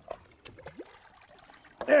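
Faint splashing and trickling water as a hooked bass thrashes at the surface beside the boat, with a few short sharp splashes. A man's voice cuts in near the end.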